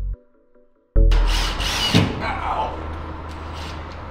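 Background music cuts off, and after a moment of near silence a power drill bores into the wall for about a second, followed by a sharp knock and the drill's lower, steady running.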